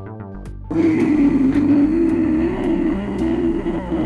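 Soundtrack music in a student cartoon, broken off about 0.7 s in by a loud, rough, steady sound effect that holds for about three seconds and cuts off suddenly at the end.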